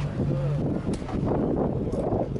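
Indistinct voices of people nearby, with wind buffeting the microphone; a steady low hum stops about half a second in.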